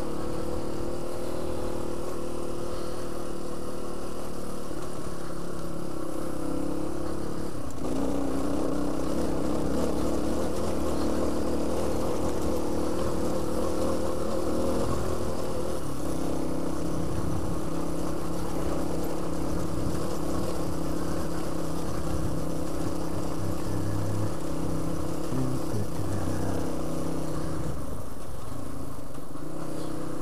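Suzuki DR350 single-cylinder four-stroke trail bike engine running steadily under way, its pitch shifting a couple of times, about a quarter and about halfway through.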